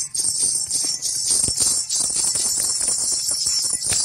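Instrumental music passage carried by fast, dense jingling percussion like shaken bells, over a busy clattering beat; it drops away suddenly at the end.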